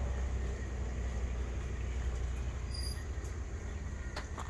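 A passing truck's low engine rumble, slowly fading as it moves away.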